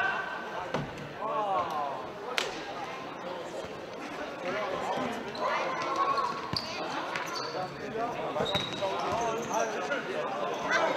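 A futsal ball being kicked and bouncing on a sports-hall floor, several sharp knocks a second or more apart, with indistinct shouting from the players.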